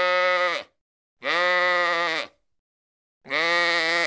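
A sheep bleating three times, each call about a second long and fairly steady in pitch, dipping slightly at its end.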